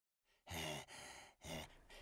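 A cartoon penguin character's wordless breathy vocal noises. A voiced sigh-like grunt comes about half a second in, followed by two shorter breathy huffs.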